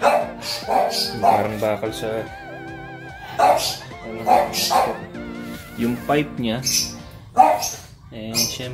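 A dog barking repeatedly over background music.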